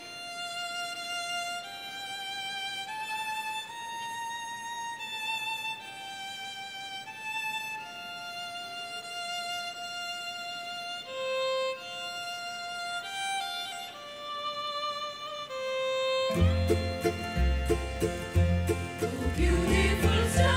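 Electronic arranger keyboard playing a slow melody one note at a time as the intro to a carol. About sixteen seconds in, a bass line and a steady drum beat come in and the music gets louder.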